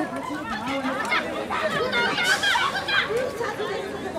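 Overlapping chatter of several high-pitched, mostly female voices calling out at once during a wheelchair basketball game, with no single speaker standing out.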